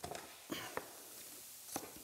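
Chef's knife slicing Chinese cabbage (wongbok) on a wooden chopping board: a few soft, short knife strikes, spaced unevenly.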